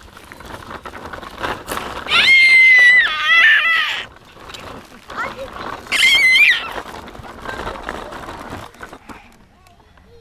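A baby shrieks loudly twice in very high-pitched, held squeals, the first about two seconds in and lasting nearly two seconds, the second shorter, about six seconds in. Under them runs a continuous rattle from the plastic push-along baby walker's wheels rolling over the garden path and grass.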